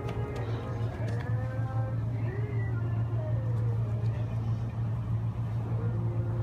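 A steady low mechanical hum runs throughout, with a faint distant voice above it.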